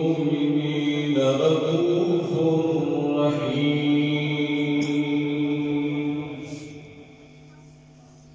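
Men's voices in Islamic devotional chanting, sung in long held notes that shift pitch a couple of times, then die away about three-quarters of the way through, leaving only a faint steady background.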